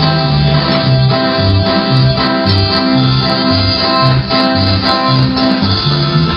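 Live band music: an electric bass guitar plays a bouncy line of short low notes, about two a second, under other sustained instruments.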